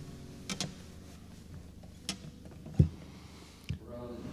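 Quiet room tone broken by a few soft clicks and knocks, the loudest a dull thump about three seconds in, as from handling an acoustic guitar or shifting on a chair.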